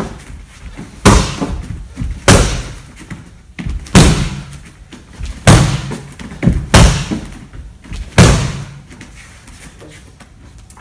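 Roundhouse kicks slamming into a handheld kick shield, left and right legs in turn. There are about seven hard smacks, roughly one every second or so, each with a short echo, and the last comes a couple of seconds before the end.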